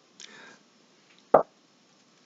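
A man's faint intake of breath, then a single short lip smack a little over a second later, the mouth noises of a speaker pausing before he talks.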